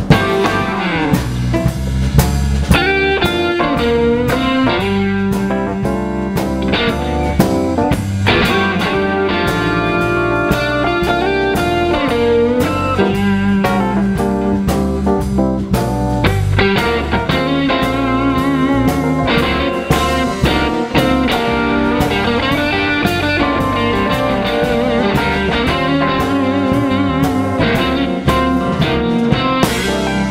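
Live instrumental blues-jazz band playing: electric guitar prominent over keyboards, bass and drum kit, with a steady beat and some wavering, vibrato-laden notes.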